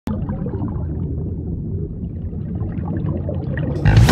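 Underwater sound picked up by a submerged camera: a muffled, steady low rumble with faint crackling. Just before the end a sudden loud swoosh begins as music starts.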